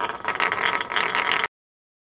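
An ice Euler's disk spinning on its edge on an ice surface: a rapid, dense rattling scrape of ice on ice that cuts off suddenly about one and a half seconds in.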